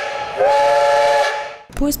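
Steam locomotive whistle: the end of one blast, then a second short blast about half a second in, sounding a chord of several tones. A hiss of steam follows and fades out.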